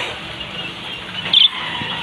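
Caged small birds chattering steadily, with one short, loud chirp about one and a half seconds in, over a steady low hum.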